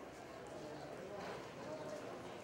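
Faint, indistinct chatter of people at ringside, a low steady murmur with no clear words.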